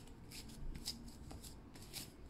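Fingers brushing the reversible flip sequins on a picture book's cover, turning them over: about four short, faint, scratchy rustles.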